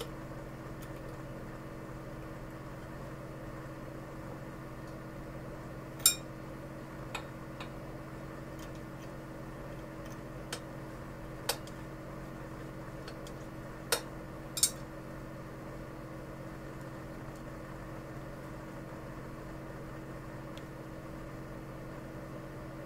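Scattered small metallic clicks and taps, about six in all with the loudest a little over a quarter of the way in, from hands prising the retaining clip off the solenoid linkage of a stainless-steel marine exhaust diverter valve. A steady low hum runs underneath.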